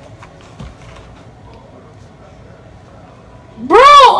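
A few faint taps over low room noise, then near the end a person's sudden loud, high-pitched yell in two rising-and-falling cries.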